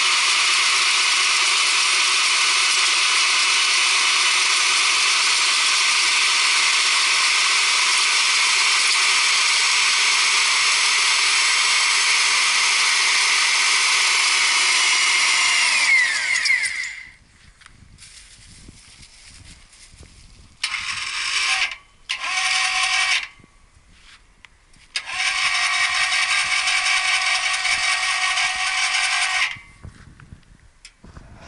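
Electric motor drive of a homemade auger drilling rig running steadily while boring into clay, with a steady whine, then spinning down with a falling tone about halfway through. The motor then runs again in two short bursts and a longer run of a few seconds as the clay-laden auger is raised out of the hole.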